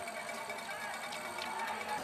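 Faint, steady background noise of an outdoor ski venue at the finish, with a faint distant voice.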